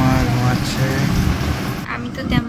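A person's voice over steady background noise, with no clear non-speech event.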